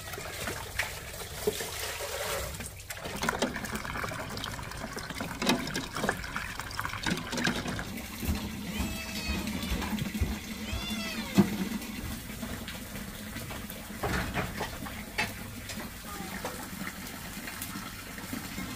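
Water running from a hose tap into a plastic basin at first, then a cat meowing twice near the middle.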